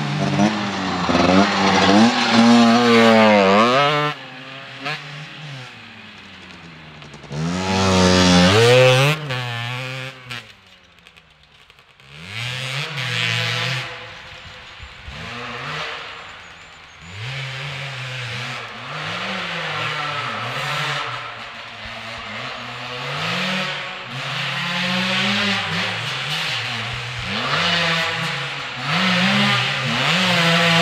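Enduro motorcycle engines revving hard, the pitch climbing and dropping again and again with throttle and gear changes. Loud in the first few seconds and again around eight to ten seconds, nearly dying away around eleven seconds, then building again as two bikes come close near the end.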